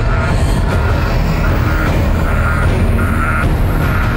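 Tense dramatic background music: a heavy, steady low drone with short higher notes repeating over it.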